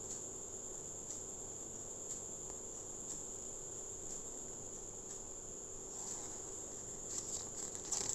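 A steady high-pitched drone of crickets, with faint ticks about once a second. Near the end, the paper pages of a CD lyric booklet rustle as they are turned.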